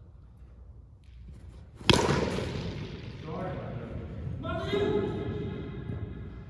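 A cricket bat strikes the ball about two seconds in: one sharp crack, the loudest sound here, echoing around the sports hall. Players shout after it, with one long call near the end.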